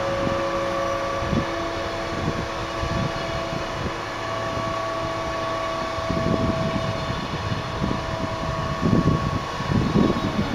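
Glacier Express panorama coaches rolling slowly past during shunting: a low rumble of wheels on rail with a few knocks, under a steady whine of several held tones from the train's electrical or ventilation equipment.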